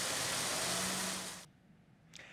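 Steady, even outdoor background noise, a wide hiss-like wash. It fades out about one and a half seconds in, leaving near silence.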